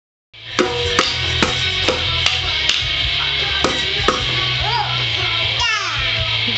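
Toy bongos struck with a wooden mallet, about two hits a second, stopping a little after the middle, with music playing in the background. Near the end comes a child's rising-and-falling shout.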